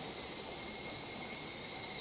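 Loud, steady, high-pitched chorus of cicadas, unbroken throughout.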